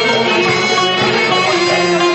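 Live folk band playing a Rumelian (Balkan Turkish) türkü, string instruments carrying the melody with long held notes over a steady accompaniment.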